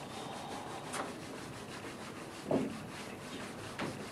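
Handheld eraser wiping writing off a whiteboard: a run of quick back-and-forth rubbing strokes, with a few louder strokes along the way.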